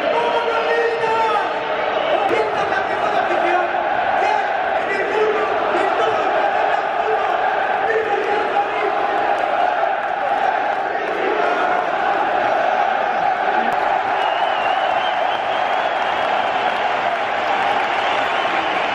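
Dense crowd noise from tens of thousands of football supporters in a stadium: a continuous mass of voices singing and shouting, with no breaks.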